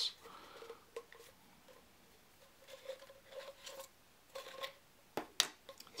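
Faint handling of a small plastic jar and its plastic game discs: scattered light clicks and scrapes, with a sharper plastic click near the end as the lid is worked off.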